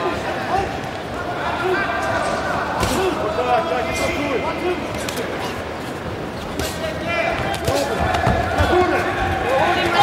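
Boxing arena during a bout: shouting voices from the crowd and corners over a steady hubbub, with occasional sharp thuds of gloves landing and feet on the ring canvas.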